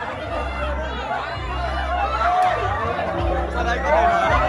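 A crowd of people talking and calling out over one another, with background music playing underneath.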